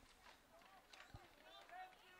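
Near silence, with faint distant voices shouting out on the football field and a faint low thump about a second in.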